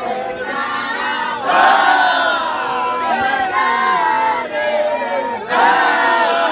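Group of male voices chanting together in a Sufi dahira, with a new, louder phrase starting about a second and a half in and again near the end.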